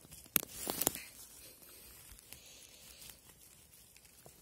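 A few sharp crackles and a short rustle of dry twigs and forest litter being handled in the first second, then faint, quiet forest background.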